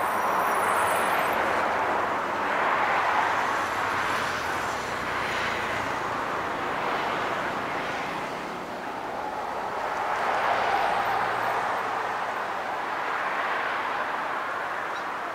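Surf breaking on a sandy beach: a steady wash of noise that swells and ebbs every few seconds.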